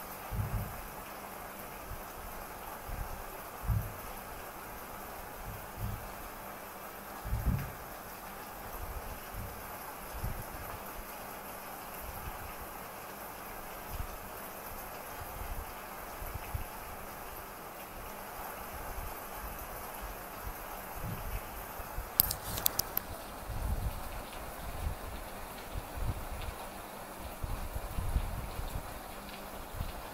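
Fine-tip ink pen drawing short strokes on a paper Zentangle tile, a faint scratching over a steady hiss, with soft irregular knocks of the hand on the tile and table. A brief burst of clicks about two-thirds of the way through.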